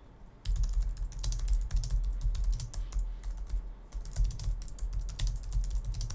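Typing on a computer keyboard: a rapid, irregular run of keystrokes starting about half a second in and thinning out near the end.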